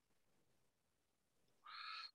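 Near silence: room tone, with a brief faint sound near the end.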